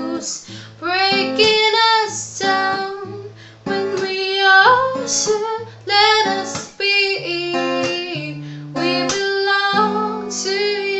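A woman singing with her own acoustic guitar accompaniment, held sung notes over plucked and strummed chords.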